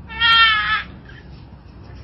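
A single loud, high-pitched livestock cry lasting under a second, starting just after the beginning, slightly wavering in pitch.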